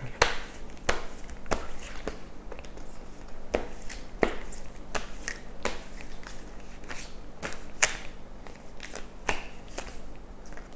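A tarot deck being shuffled by hand: irregular sharp clicks and snaps of the cards, one or two a second.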